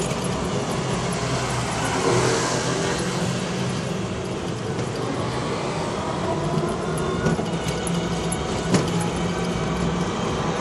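Ride noise aboard an electric trike on a city street: a steady rumble of tyres and road with a low steady hum, a few light clicks, and one sharp knock near the end.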